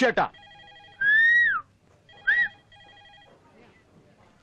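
A telephone ringing in faint pulsing trills, twice, with a loud whistle-like glide that rises then falls between the two rings and a shorter one during the second.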